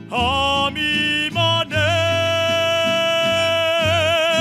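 A male singer holding a long, high sustained note with a mariachi band accompanying him. The note swoops up at the start, breaks briefly a couple of times, then is held steady, with vibrato coming back near the end.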